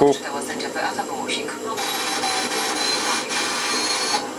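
Sound of an FM station coming from the ZRK AT9115 stereo receiver's loudspeaker as it is tuned to a station mid-dial: a faint voice in the first second or so, then a steady hiss-like sound.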